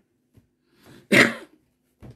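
A man clears his throat once, a short sharp burst a little over a second in, in a pause between his words.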